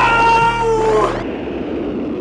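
A cat's long, loud yowl, lasting about a second and sliding down in pitch before it breaks off, followed by a quieter hiss.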